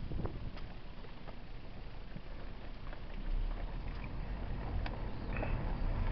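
Vehicle rolling slowly over a gravel lot, heard from inside the cabin: a steady low rumble from the tyres and body, with scattered small clicks. The rumble grows louder about three seconds in.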